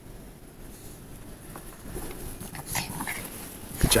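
Pomeranian making a few short, faint whines as it runs up.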